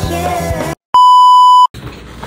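Rock music with singing cuts off abruptly; after a brief silence a single loud electronic beep sounds, one steady pure tone lasting under a second, an edited-in transition beep.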